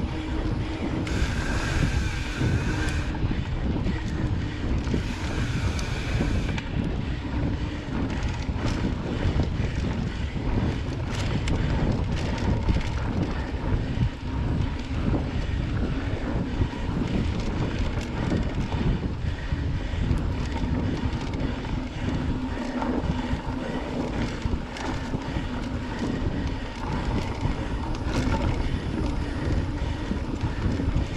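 Mountain bike rolling over a dirt singletrack, heard through a handlebar-mounted camera: a steady low rumble of wind on the microphone and tyres on dirt, with many small knocks and rattles from the bike over bumps. Twice in the first several seconds a brief higher hiss joins in.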